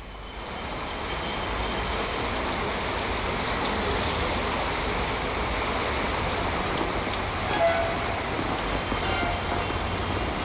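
Steady noise of heavy rain and traffic on a waterlogged road, with a short higher tone about three-quarters of the way through.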